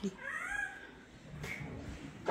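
A cat meowing once near the start, a short call that rises and falls in pitch.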